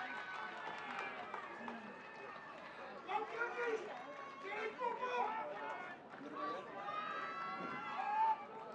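Faint, distant voices of people on a rugby field calling and talking in short snatches, with no one voice close by.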